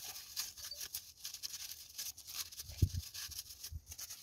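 Faint rustling and light scraping as hands pull the oil dipstick from a generator's filler neck and handle a cloth rag to wipe it. Two soft thumps come in the last second and a half.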